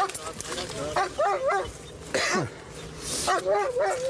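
Police K9 dog barking in two quick runs of short, sharp barks, with a brief rushing noise between them.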